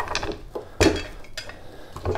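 A few clinks and knocks of hard parts as a PowerBlock adjustable dumbbell is handled and turned over, the loudest a sharp knock a little under a second in.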